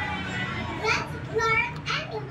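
Children's voices: short bits of child speech and chatter, strongest about a second in and again near the end, over a steady low background hum.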